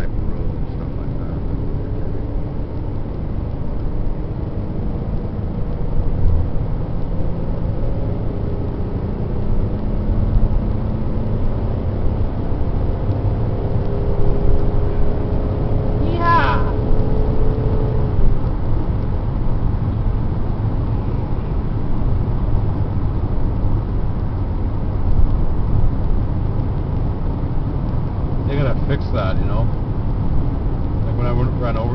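Steady engine and road noise inside the cabin of a moving 2002 Chevrolet Impala, a low rumble with a faint hum that drifts slightly in pitch as the car cruises along the highway.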